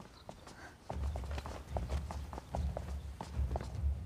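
Quick, irregular footsteps of several people hurrying, with a low steady rumble underneath that starts about a second in.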